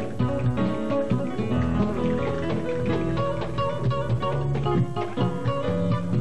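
Instrumental introduction of a Peruvian vals criollo: nylon-string classical guitars playing plucked melody and accompaniment over a steady bass line.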